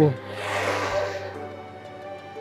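A man's voice ends a word at the very start, then soft background music with held, steady notes, and a brief soft rushing noise about half a second in.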